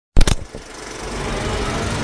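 Title-intro sound effect: a sharp loud hit, then a low rumble that swells steadily louder.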